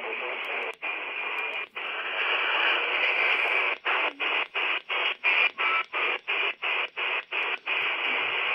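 HF-modified Quansheng UV-K6 handheld receiving the 20-metre band in LSB: steady band-noise hiss from its speaker. The hiss cuts out briefly twice, then from about halfway it cuts out about four times a second as the frequency is stepped up the band.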